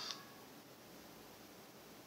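Near silence: the tail of the music dies away just after the start with a faint click, leaving a low steady hiss of room tone.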